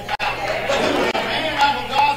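Speech only: a man speaking over a microphone in a large hall, mixed with other voices talking at the same time.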